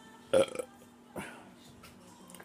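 A woman's short, loud burp about a third of a second in, followed by a fainter short mouth sound about a second in.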